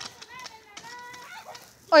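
Faint, distant child's voice calling in short pitched bits, then a close voice saying "Oh" near the end.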